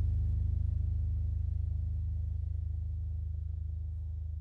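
Low sustained electronic drone with a slight regular pulse, slowly fading out as a piece of live ambient music dies away.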